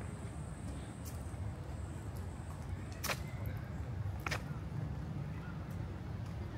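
Outdoor park ambience: a steady low rumble with two sharp clicks, about three seconds in and again a second later.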